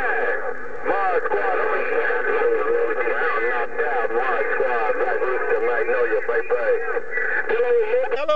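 Voices of other stations coming in over a President HR2510 radio's speaker: thin, narrow-sounding radio speech with several voices overlapping, too garbled to make out.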